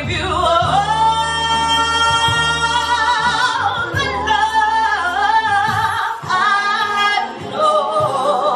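A woman singing an R&B song live into a handheld microphone. She holds one long note, then sings shorter phrases with vibrato.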